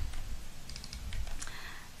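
Computer keyboard typing: irregular key clicks as text is typed and pasted into a document.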